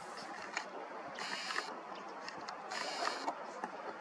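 A camera's built-in zoom motor whirring in two short bursts as the lens zooms out, over faint steady outdoor background hiss, with a few small clicks.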